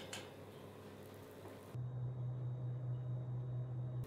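A baking tray slid out of an oven rack, with a light click at the start and another about a second and a half in. At about two seconds in, a steady low hum starts abruptly.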